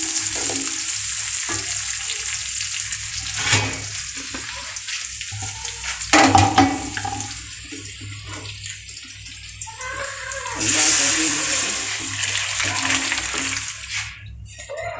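A tempering of onions, garlic and dried red chillies sizzling in hot oil in a metal wok, stirred with a wooden spatula that knocks against the pan a couple of times. About eleven seconds in, the sizzling surges louder as the hot tempering goes into the dal.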